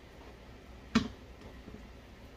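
One sharp knock about a second in, from a peeled watermelon being handled on a plastic cutting board, followed by a couple of faint taps.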